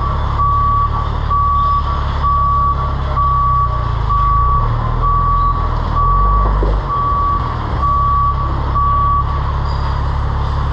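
Truck backup alarm beeping at one pitch about once a second, stopping near the end, over the WhiteGMC WG roll-off truck's diesel engine running, whose note shifts about six to seven seconds in.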